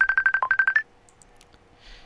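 An electronic alert tone: a quick run of about a dozen short, high beeps on one pitch in under a second, with one lower beep midway and a slightly higher beep at the end, like a phone's ring or notification.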